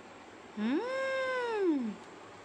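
One long meow that rises in pitch, holds, then slides down at the end.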